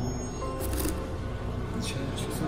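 Background music playing, with a brief rustle of cardboard and packaging being handled about half a second in and again near the end.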